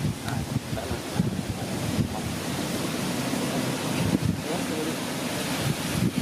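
Wind rumbling on the microphone: a steady, noisy rush, with faint voices or calls over it now and then.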